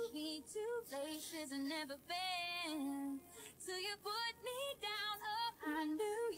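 A female voice singing quietly in short melodic phrases, the pitch gliding and wavering between notes, with brief pauses between phrases.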